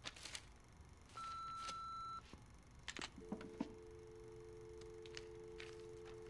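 Telephone sounds: an answering machine gives one long beep, about a second in, lasting about a second. A few clicks follow, then a two-note telephone dial tone comes on and holds steady.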